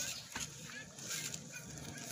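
Birds calling in short, repeated chirps and clucks over a steady low hum.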